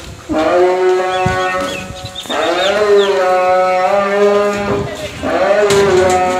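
A man's voice singing a devotional chant in long drawn-out held notes, three of them, each held about two seconds at nearly the same pitch with a slight waver.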